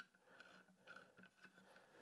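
Near silence, with a few faint, short clicks of hands handling small hardware and a wooden block.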